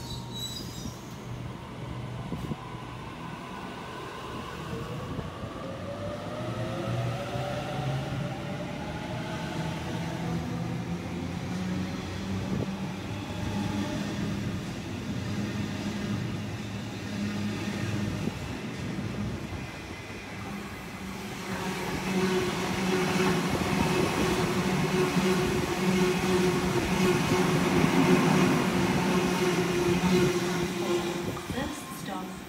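Double-deck electric suburban train pulling away from the platform. Its traction motors whine upward in pitch as it gathers speed. Near the end the rumble of wheels on rail grows louder as the last carriages run past at speed.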